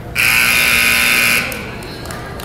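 Gym scoreboard buzzer sounding once, a loud steady buzz of a little over a second, marking the end of the wrestling period.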